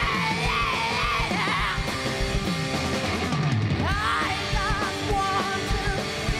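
Live rock band playing: electric guitars, bass and a steady kick drum, with a male lead singer belting long, wavering wordless notes in the first two seconds and again from about four seconds in.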